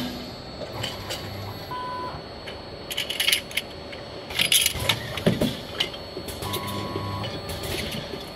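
CIMEC AML can filling and seaming monoblock running: a steady machine background broken by clusters of metallic clicks and short hissing bursts about three, four and a half and five seconds in, and again near the end. A brief faint whine comes twice, near two and near seven seconds.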